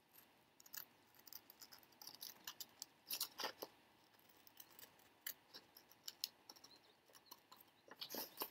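Small scissors snipping through a magazine page, cutting out a picture: faint, irregular snips, a few louder ones about three seconds in.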